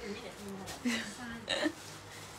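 Speech: a person's voice in a few short utterances, the loudest about a second in and a second and a half in.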